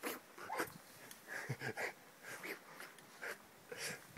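A dog making a series of short, faint sounds at irregular intervals.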